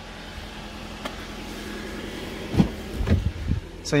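A car's front door being unlatched and swung open: a few low clunks and knocks about two and a half to three and a half seconds in, over a steady low background hum.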